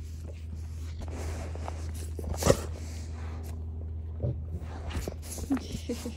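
A dog moving about close to the phone, with light scuffs and small knocks, one sharp knock about two and a half seconds in, over a steady low rumble.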